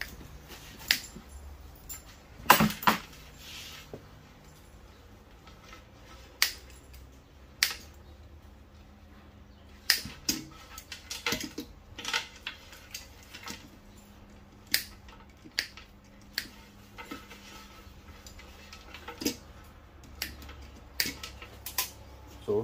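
Wire cutters snipping and pulling insulated wires off a small electrical switch: scattered sharp clicks and small metallic clinks, the loudest a few seconds in.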